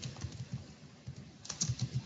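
Computer keyboard being typed on: a run of quick key clicks, most closely spaced near the end.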